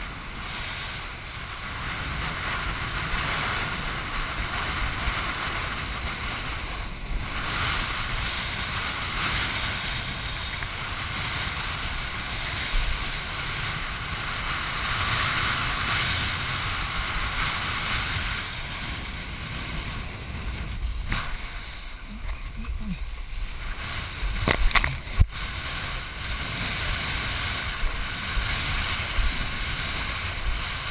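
Wind buffeting a head-mounted GoPro and the rushing hiss of water as a kiteboard rides over choppy sea. A few sharp knocks come about three-quarters of the way through.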